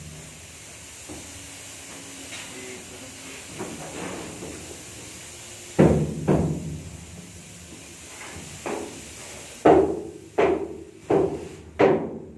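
Sharp knocks on the plywood floor of a steel shipping container over a steady hiss: a few scattered knocks from about halfway, then about five evenly spaced ones, roughly 0.7 s apart, near the end.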